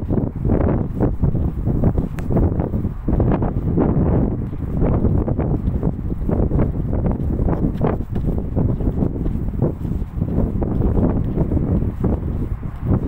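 Wind buffeting the phone's microphone: a loud, gusting low rumble that swells and dips irregularly.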